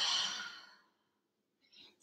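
A woman's open-mouth exhale, an audible sigh that fades away within the first second.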